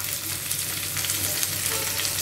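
Chopped cabbage sizzling in hot oil in a non-stick kadai, with light scraping as a spoon stirs it, over a steady low hum.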